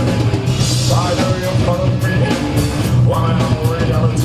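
A live rock band playing loud and steady, with a drum kit, bass and guitars, and a voice singing a melodic line over them.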